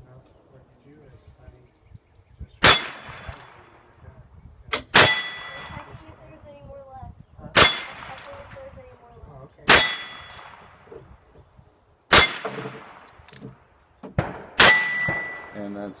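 Six shots from a Ruger Bearcat .22 single-action revolver, spaced about two to two and a half seconds apart, each answered by the ringing clang of a hit on a steel plate target.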